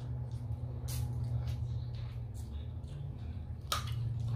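Eating and handling of seafood-boil crab legs and shells at a table: a few sharp clicks and cracks, the loudest one near the end, over a steady low hum.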